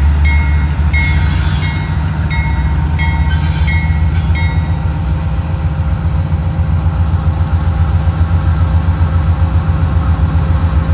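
Union Pacific diesel locomotive leading a freight train slowly past, its engine giving a steady low drone. A bell rings about twice a second for the first four seconds or so, then stops; after that the drone throbs with an even beat.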